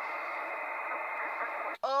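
Steady shortwave receiver static from the transceiver's speaker in the gap after the far station stops transmitting, cutting off abruptly near the end.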